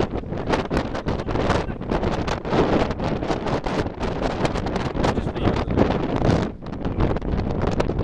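Wind buffeting a Flip video camera's microphone in uneven gusts, loud and rough, rising and falling throughout.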